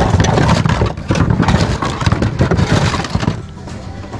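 Mixed plastic, metal and glass household items clattering and knocking against each other as hands rummage through a bin of secondhand goods. The clatter is dense for about three seconds, then dies down.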